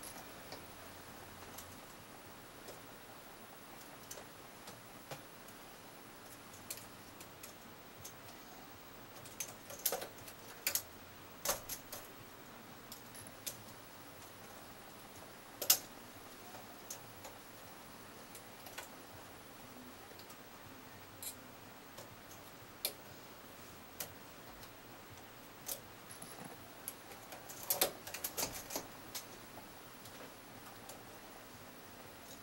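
Faint, scattered metal clicks and taps of hand transfer tools against the needles of a bulky double-bed knitting machine as stitches are moved for cable crossings. The clicks come in small clusters, about ten seconds in and again near the end, with one sharper click about halfway.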